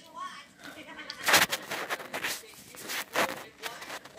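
A person's voice in three loud bursts about a second apart, the first and loudest a little over a second in.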